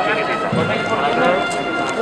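Crowd chatter: many voices talking over one another, with a dull low thump about half a second in.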